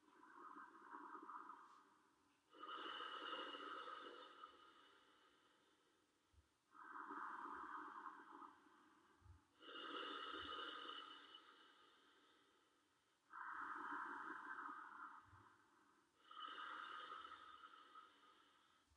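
Faint, slow, deliberate breathing: a person's breaths in and out, each lasting two to three seconds, in an even alternating rhythm.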